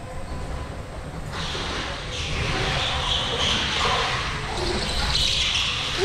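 Go-kart tyres screeching on the smooth indoor track floor over a low rumble. The hiss swells about a second in and peaks twice, in the middle and near the end.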